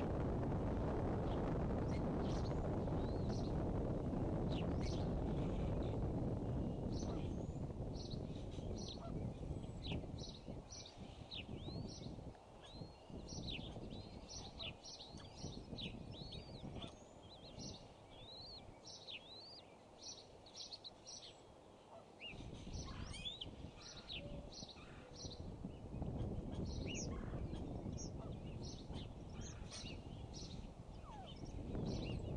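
Bald eagle eaglets peeping: many short, high-pitched peeps, some sliding up or down, in quick runs from about seven seconds in. Under them runs a low rumble that eases off in the middle and comes back near the end.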